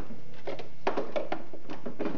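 A quick run of sharp clicks and knocks, hard plastic being handled on a child's battery-powered ride-on toy car, bunched from about half a second in to about a second and a half.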